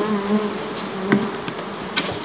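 Honey bees buzzing around an open hive: a few overlapping wavering hums, with a light knock about a second in and another near the end.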